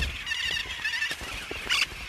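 Austral parakeets (cachañas) chattering: quick, wavering high calls with a few scattered clicks, and one louder, harsher call near the end.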